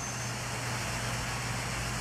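Steady low hum over a faint hiss, from the small electric motors driving a turning toy Ferris wheel and a model train.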